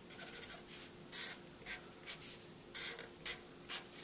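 Black felt-tip marker drawing on paper: a quick run of tiny strokes at the start, then about six short separate strokes, the loudest just after a second in and near three seconds.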